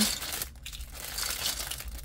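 A clear plastic bag of small plastic half pans crinkling as it is handled, irregular crackles loudest at the start and continuing more softly.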